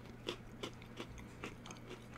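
A person chewing a crunchy chocolate-coated cookie close to the microphone: a faint, irregular string of small crunches several times a second.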